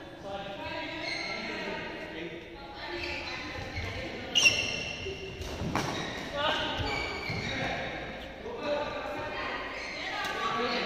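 A badminton doubles rally in a large hall: rackets striking the shuttlecock and footwork on the court, the loudest a sharp hit about four and a half seconds in, with voices talking throughout.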